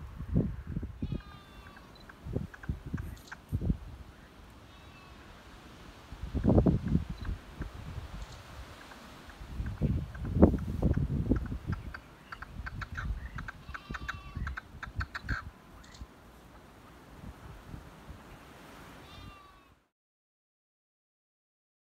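Gusts of wind buffeting the microphone, and a harsh, rapidly rattling bird call repeated several times, in the later part from a red-legged partridge. The sound cuts off just before the end.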